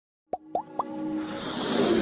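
Three quick rising plops about a quarter second apart, then a swelling whoosh that builds louder toward the end: an electronic logo-intro sting.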